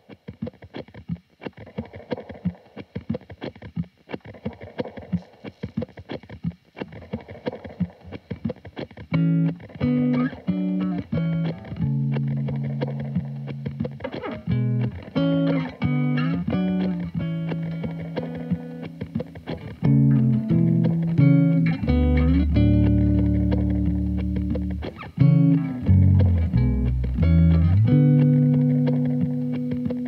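Indie band playing live: an electric guitar through effects pedals plays a quick, rhythmic picked pattern, and about nine seconds in a bass guitar joins with steady low notes under it.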